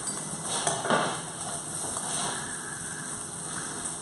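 Salmon fillet sizzling steadily in a hot frying pan, with a couple of faint clinks of kitchenware within the first second.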